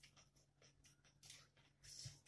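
Faint eating sounds: a few soft, short smacks and scrapes from chewing and from fingers mixing rice on a plate, over near silence.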